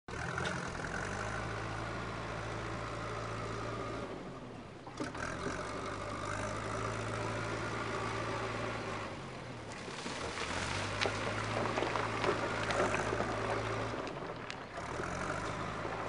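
Diesel engine of a backhoe loader running under load, a steady low drone that eases off briefly about four, nine and fourteen seconds in. It is louder and rougher from about ten to thirteen seconds in.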